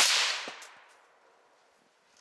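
A single suppressed rifle shot from a PWS MK2 Mod 1 in .300 Blackout fitted with a Silencerco Omega suppressor: one sharp report whose tail dies away over about a second, with a softer knock about half a second in.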